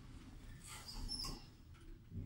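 Kasper passenger lift car setting off upward after its doors close: a low running rumble with a brief high squeak about a second in.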